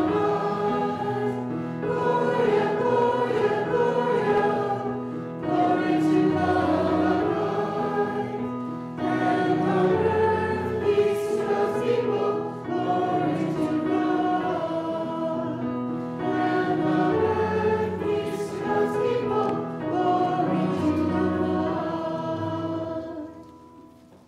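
Congregation singing a hymn together with instrumental accompaniment, in phrases of about four seconds over held low notes. The last chord fades away near the end.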